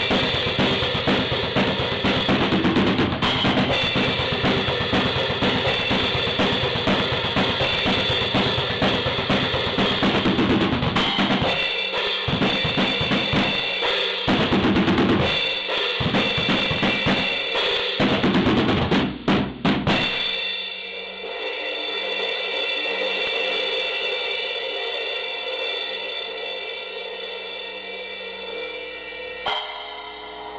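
Drum kit solo: dense, fast strokes on drums and cymbals, breaking up about a third of the way in into shorter groups of hits with brief gaps. The playing ends about two-thirds through with a few final strokes, and the cymbals then ring on and slowly fade out.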